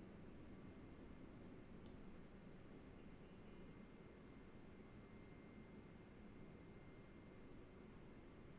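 Near silence: faint steady room noise and hiss, with a faint thin steady tone.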